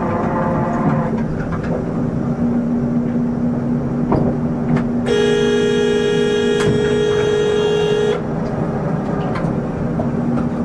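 Inline skate wheels rolling on asphalt with a steady hum. About five seconds in, a horn sounds in one sustained blast of about three seconds, then cuts off.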